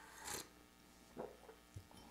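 A short slurp as hot coffee is sipped from a small glass, about a third of a second in, followed by a couple of faint mouth sounds.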